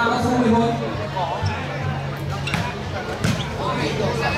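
Volleyball being struck during a rally: a few sharp hits of hands on the ball in the second half, over the voices of the crowd.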